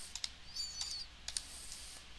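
Light clicks of keys tapped on a computer keyboard, several spread over the first second and a half, as a stock ticker is typed into charting software.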